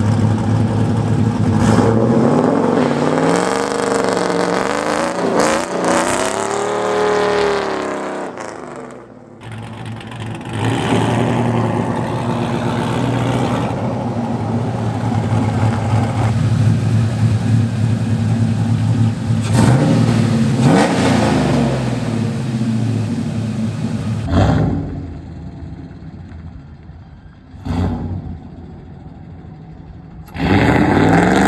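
Chevrolet Silverado pickup's engine revving and accelerating as it drives around, the pitch rising and falling several times. The sound breaks off suddenly a few times, and it is quieter near the end.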